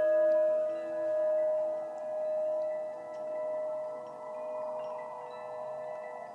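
Singing bowl ringing on after being struck, slowly fading, its tone wavering in loudness about once a second.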